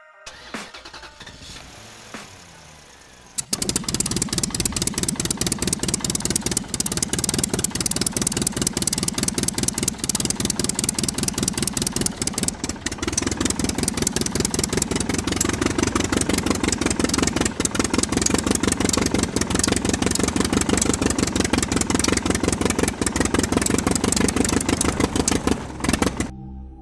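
Miniature model diesel engine on a DIY toy-train chassis running with a fast, even chugging knock, starting loudly a few seconds in and cutting off suddenly at the end.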